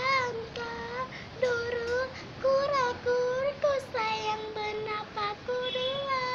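A girl's high voice singing a slow melody in long held notes that slide up and down between pitches, with short breaks between phrases.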